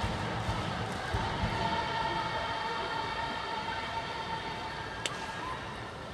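A high-school baseball cheering section in the stands: drum beats, then brass holding a long chord over crowd noise. A single sharp click comes about five seconds in.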